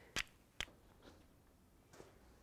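Two sharp clicks of stone knocking against stone, a little under half a second apart, as a knapping core and hammerstone touch together.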